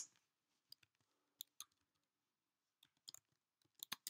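Faint, scattered clicks of a computer mouse and keyboard against near silence, with a quick cluster of keystrokes near the end.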